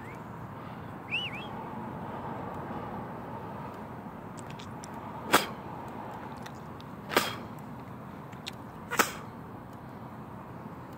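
A 7,000-volt electric security fence snapping three times, sharp cracks about two seconds apart as its charge pulses.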